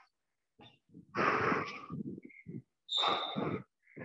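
A person breathing hard from exertion: two loud, noisy exhalations, one about a second in and one about three seconds in, with smaller breaths between.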